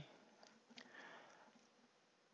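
Near silence, with a faint sniff about a second in.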